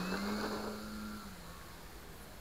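Motor and propeller of an HK Edge 540 V3 RC aerobatic plane running at a steady pitch, then fading about halfway through as the plane climbs away.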